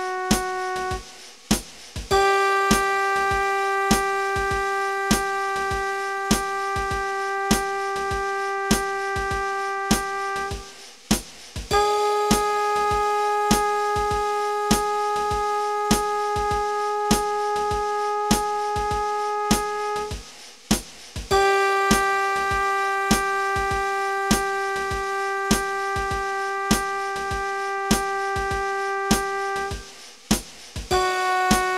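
Long-tone practice accompaniment: single sustained notes on a keyboard-like instrument, each held about eight seconds with a short break between, the middle note a step higher, over a steady metronome click.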